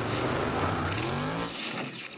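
Dirt track race car engine running hard, its pitch rising as it accelerates, then fading out about one and a half seconds in.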